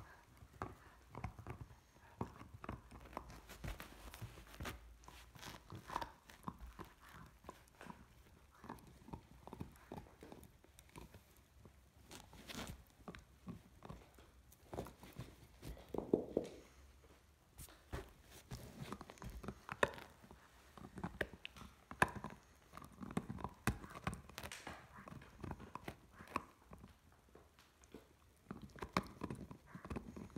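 Great Dane puppy gnawing on a red chew-toy bone: irregular soft clicks and scrapes of teeth on the toy, coming and going with pauses.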